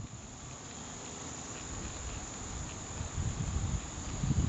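Chorus of insects giving a steady high-pitched drone, with an uneven low rumble underneath that swells near the end.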